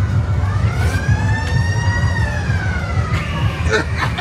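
One long siren-like wail that rises in pitch for about a second and a half, then falls away over about as long, over a steady low rumble of background noise.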